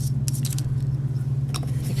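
A steady low electrical hum, with faint scratching and a couple of small clicks near the end as paper is handled and pressed down on a steel worktable.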